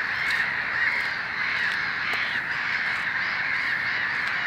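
Many birds calling over one another in a dense, unbroken chorus of short chirping calls.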